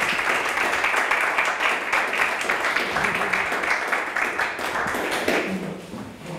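A small audience applauding at the end of a talk: dense, even clapping that dies away about five seconds in.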